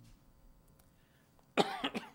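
A man coughs into his elbow: a short, sudden cough about one and a half seconds in, after a quiet pause.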